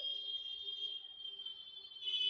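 A faint, steady, high-pitched whistle-like tone made of a few parallel pitches, growing louder near the end.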